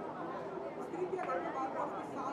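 Background chatter of several people talking over each other, with one voice saying "okay" a little past a second in.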